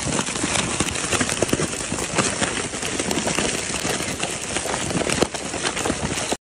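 Plastic snack wrappers crinkling and rustling as a crowd of macaques grabs and tears at packets from a cardboard box: a dense, continuous run of crackles.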